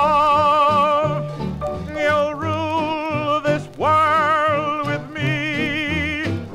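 Music: a 1920s-style band recording with a melody of long held notes and wide vibrato, in four phrases, over a bass line and band accompaniment.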